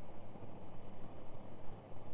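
Steady riding noise from a Honda Gold Wing touring motorcycle cruising at road speed: wind and road rush with a low, even hum from its flat-six engine, held at a constant speed.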